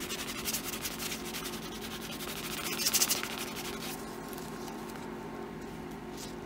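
Leather edge being burnished by hand with a piece of cloth and Tokonole cream: quick back-and-forth rubbing strokes that are busiest about three seconds in and fade after about four seconds. A low steady hum runs underneath.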